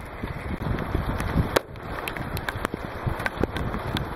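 Steady rain and wind noise with scattered sharp taps, and one sharper crack about a second and a half in: a shot from a .22 caliber Benjamin Armada PCP air rifle fired into a ballistics gel block.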